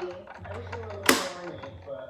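Small clicks and handling noise, with one sharp knock about a second in, over a television's voices in the background.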